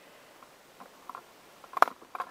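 Quiet room tone with a few faint ticks and one sharp click near the end, small handling noises.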